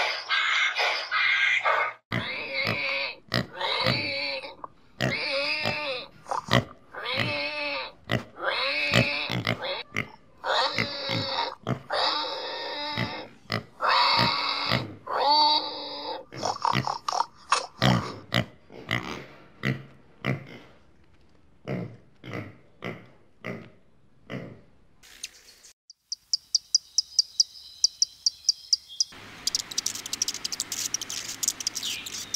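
Pigs grunting and squealing, a long string of pitched calls about one a second, then shorter and fainter grunts. Near the end a different high, rapid ticking sound comes in.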